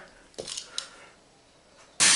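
A sharp click about half a second in, then a few lighter ticks from toy race cars being handled on the floor. Low room tone follows.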